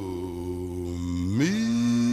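Male baritone singer drawing out the last word of a 1950s orchestral ballad as one long note: the pitch slides down, holds low, then swoops sharply back up about a second and a half in and holds.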